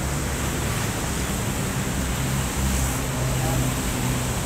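Steady outdoor background noise: a continuous rumble and hiss with a low droning hum underneath, and no distinct event standing out.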